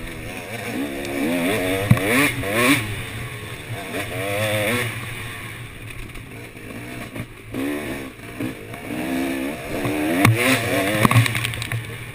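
KTM dirt bike engine revving hard, its pitch climbing in repeated sweeps and dropping back between them as the rider accelerates and shifts. A few sharp knocks and clatter come from the bike over rough ground.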